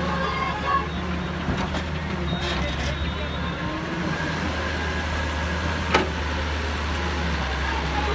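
Wheeled excavator's diesel engine running steadily under hydraulic load while the boom swings and the bucket digs soil, with a sharp knock about six seconds in.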